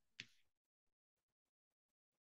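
Near silence with one faint, short click just after the start: a computer mouse click advancing the slideshow past its last slide.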